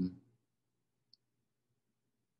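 The tail of a man's word, then near silence with one faint, very short click about a second in.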